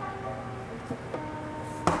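Background music with sustained, held notes, and one sharp knock near the end.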